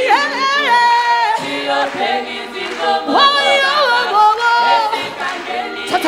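A woman singing live into a microphone: long held notes that slide up and down in pitch, one phrase at the start and another about three seconds in.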